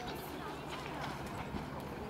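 Overlapping distant shouts of children and adults across a youth football pitch, with a scattered patter of running feet on hard, dry dirt.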